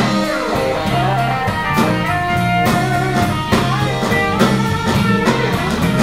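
Live blues band playing an instrumental passage of a slow blues: electric guitar lead notes, some bending in pitch, over rhythm guitar and a drum kit.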